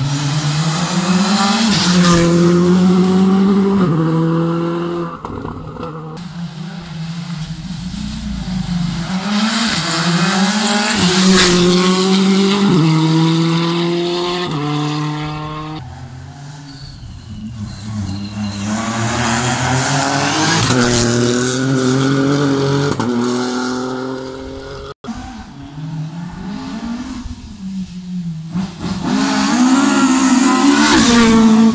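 Rally cars at full throttle on a stage, coming through one after another. Each engine's note climbs steeply and drops back at every upshift, and the sound swells as a car approaches and fades as it goes.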